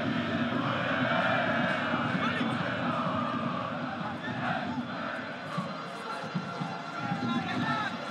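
Football stadium crowd noise, a mass of shouting voices from the stands that gradually dies down.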